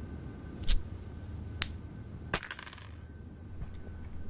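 Coins: one strikes a hard surface and rings briefly, a single click follows, and then a short jangle of several coins about two and a half seconds in.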